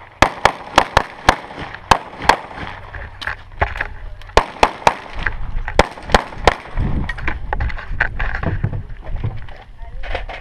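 Rapid pistol shots in quick strings: about seven in the first two and a half seconds, another cluster between about three and a half and five seconds, and a few more around six seconds. A low rumble fills the second half, with lighter knocks in it.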